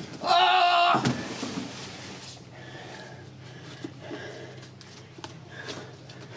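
A loud cry of "Oh!" in the first second, then quiet rustling with a few small clicks as hands rummage through a wire basket lined with cloth, over a steady low hum.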